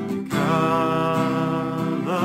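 A man singing a worship song to his own strummed acoustic guitar; his voice comes in about a third of a second in and holds one long note until near the end.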